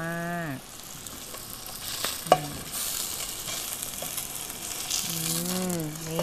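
Salmon fillet frying in vegetable oil in a pan over medium heat, a steady sizzle that grows louder about two seconds in. A single sharp knock sounds just after the sizzle picks up.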